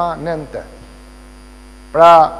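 A man's speech breaks off about half a second in, leaving a steady electrical mains hum in the recording.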